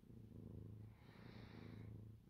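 Ginger cat purring faintly as its head is stroked, in two long cycles of about a second each.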